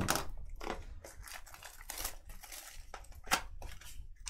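Plastic shrink wrap being torn and crinkled off a cardboard trading card box by hand: a run of irregular crackles, with one sharper snap about three seconds in.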